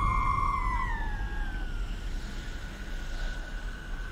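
Horror film sound design from the film's soundtrack: an eerie, steady high tone that slides down in pitch over the first two seconds and then holds, over a low rumble.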